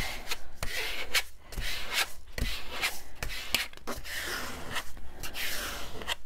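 Edge of a plastic card scraping over paper in repeated short strokes, burnishing a freshly glued sheet flat.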